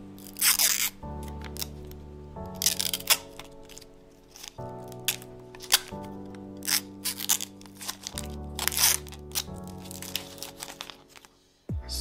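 Clear protective plastic film being peeled and handled on a laser engraver module's red acrylic shield, crinkling in several short, loud bursts. Under it runs background music with held chords that change every second or two and fade out near the end.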